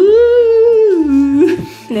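A person's voice holding one long, loud note that steps down to a lower pitch about a second in and stops about halfway through the second second.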